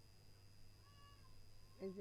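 Near silence: a steady low electrical hum and a faint high whine from the recording chain, with a faint brief gliding tone about a second in. A voice starts speaking right at the end.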